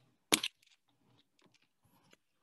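One loud, sharp click close to the microphone about a third of a second in, followed by a few faint ticks.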